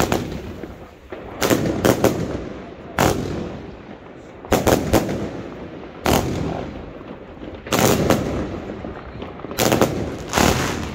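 A 'Treasure Hunter' consumer firework cake firing repeated shots. Sharp bangs come singly or in quick clusters of two or three, about every one and a half to two seconds, each fading out in a short trailing echo.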